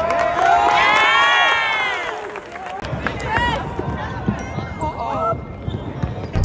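Basketball game sounds in an arena: several voices go up together in one long shout about half a second in as a shot flies toward the rim, then scattered calls, short squeaks and knocks from the court.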